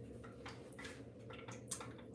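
Wooden spoon stirring liquid in a glass measuring cup: faint, scattered light clicks and taps of the spoon against the glass.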